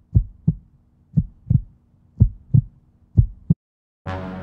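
Heartbeat sound effect: pairs of low thumps, lub-dub, about one pair a second, four pairs in all, cutting off shortly before the end.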